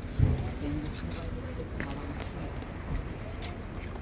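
Faint, indistinct voices of people standing around in the open, with a single knock about a quarter second in and a few light clicks.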